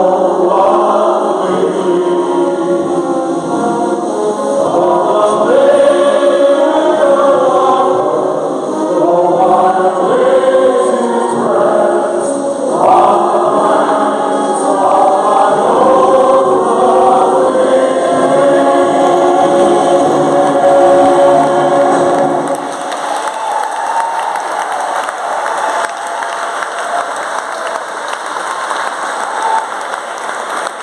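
Several singers with microphones singing a song together. The song ends about 22 seconds in and the audience breaks into applause.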